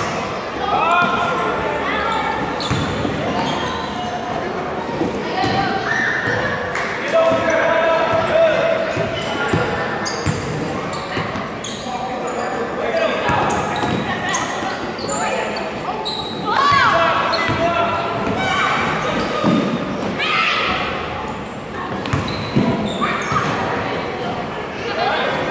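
A basketball bouncing repeatedly on a hardwood gym floor during play, with players and spectators talking and calling out throughout, the whole echoing in a large gym.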